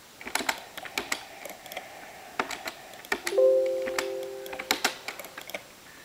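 Irregular light clicks and taps, much like typing on a keyboard. About three seconds in, a short chime of a few steady tones sounds and fades away within a second and a half.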